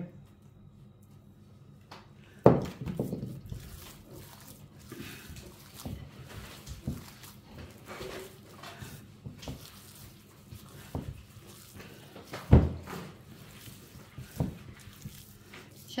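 Hands squishing and kneading a wet minced-pork and soaked-bread meatball mixture in a glass bowl, in irregular soft squelches. Two sharp knocks stand out, about two and a half seconds in and again near twelve and a half seconds.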